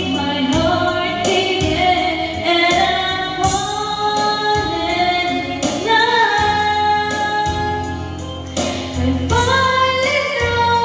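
A woman singing a slow melody into a karaoke microphone over a backing track with a steady beat, her voice sliding between notes.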